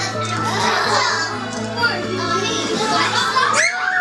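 A group of young children chattering and calling out over background music with a steady low bass note. Near the end, one high child's voice rises and then falls away.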